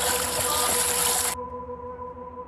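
Steady rushing noise of floodwater on a police body-worn camera's microphone, which cuts off suddenly about 1.4 seconds in. Soft ambient music with a steady held tone is left underneath.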